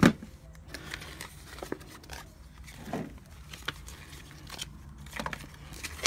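Paper leaflets and cards being handled on a glass tabletop: soft rustling of paper with scattered light clicks and taps.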